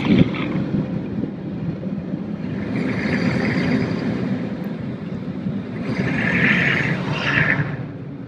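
Automatic car wash machinery heard from inside the car through the closed window: a steady low rumble, with a hissing rush that swells about three seconds in and again, louder, near the end, then dies away.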